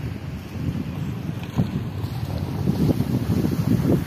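Wind buffeting the microphone: an uneven low rumble that gusts up and down.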